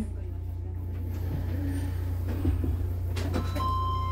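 Interior of a Sendai Subway Namboku Line train arriving at a station: a steady low rumble of the train slowing. A few clicks come a little after three seconds in, and a steady high tone starts just before the end.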